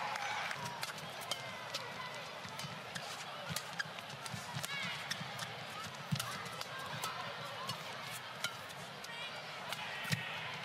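Badminton rally: sharp racket strikes on the shuttlecock and quick footfalls, with court shoes squeaking on the mat, over a low murmur of the arena crowd.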